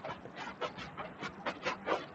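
Handheld eraser rubbing back and forth across a whiteboard in quick swishing strokes, about four or five a second.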